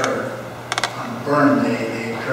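A quick run of sharp clicks a little under a second in, amid a man's voice.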